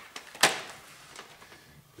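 One sharp knock as a vinyl floor plank is set down on the floor, followed by faint handling noises.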